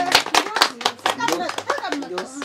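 Several people clapping their hands in a quick, fairly even rhythm, about four claps a second, with voices over it; the clapping thins out near the end.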